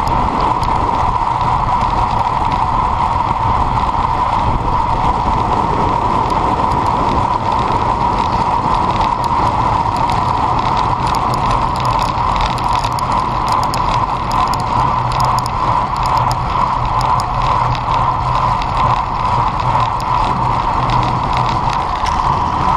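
Road bicycle at speed: steady wind and tyre noise, with a fast ratchet ticking from the rear freehub while coasting and scattered clicks from the bike in the middle of the stretch.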